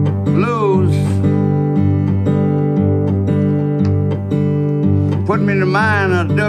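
Acoustic guitar playing a blues accompaniment over a steady, repeating bass line. A voice comes in briefly about half a second in and again near the end.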